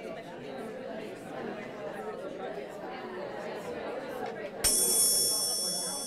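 A roomful of people chatting, then about two-thirds of the way in a handheld chime wand is struck and rings with several high, bright tones that slowly fade. It is a classroom attention signal, the cue to stop talking.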